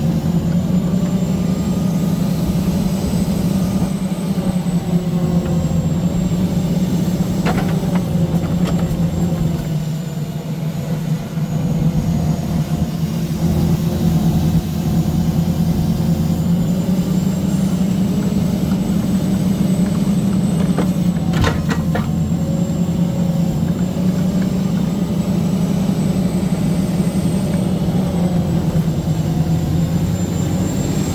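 Log truck's diesel engine running steadily, powering the hydraulic log loader as its grapple boom swings over the logs. A few sharp knocks come about 8 seconds in and again near 21 seconds.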